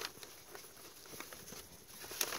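Quiet, with a few faint light ticks and rustles from hands handling flower stems and a brown paper bag.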